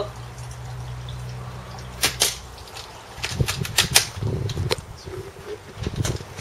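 A VSR-10 spring-powered bolt-action airsoft sniper rifle firing one shot about two seconds in, a sharp double crack, followed about a second later by a quick run of clicks.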